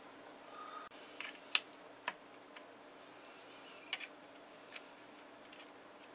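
Faint, scattered small clicks and taps of fingers working a ribbon-cable riser connector loose inside an opened Motorola MTS2000 portable radio, about five over a few seconds, the sharpest about a second and a half in.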